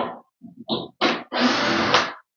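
Cordless drill-driver running steadily for about a second near the end, backing a screw out of a cabinet carcass to dismantle it. A few brief short sounds come before it.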